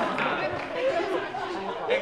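Indistinct overlapping talk: voices speaking at once, too jumbled for clear words.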